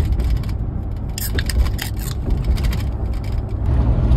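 Van running, heard from inside the cab: a steady low engine and road rumble, with a run of small irregular clicks and rattles through the middle.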